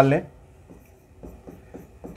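Faint taps and scratches of a pen writing on an interactive smart-board screen.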